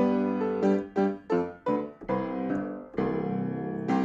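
Piano music playing struck chords, with a quick run of short notes about a second in, then held chords.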